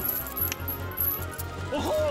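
A metallic jingling and clinking of a large ring of keys over steady cartoon background music, with a short cartoon character's vocal glide near the end.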